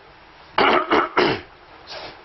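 A man coughing to clear his throat: three quick harsh coughs about half a second in, then a smaller one near the end, close to the microphone.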